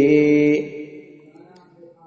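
A man's voice chanting a line of Arabic verse in a slow melodic recitation, holding the final note steadily before it fades out about half a second in.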